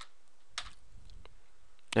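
A few soft computer keyboard keystrokes over a faint steady hiss.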